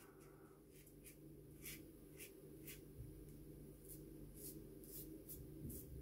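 Faint, short scrapes of a RazoRock Gamechanger 0.84 mm safety razor cutting stubble through shaving lather, about eight separate strokes.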